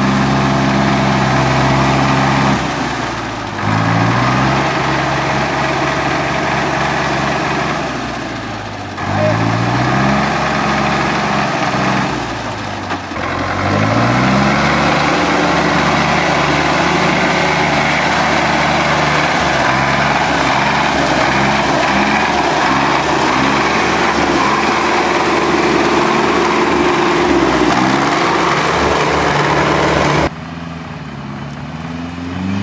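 GAZ-66 truck engine working hard through deep mud: the revs drop and climb back up three times in the first half, then are held high and steady.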